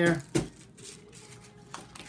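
A flat screwdriver tip striking and prying at a hard digging block on a paper plate: one sharp tap about a third of a second in, then a faint tick near the end.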